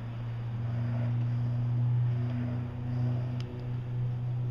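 A steady low hum that swells a little in the middle and eases off near the end.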